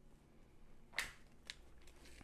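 Two sharp clicks about half a second apart, the first louder, from a tape measure being handled as it is set up to measure a window opening.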